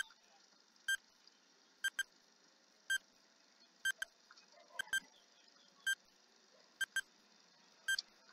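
Countdown timer sounding a short electronic tick-like beep once a second as it counts down from ten, some beats coming as a quick double blip.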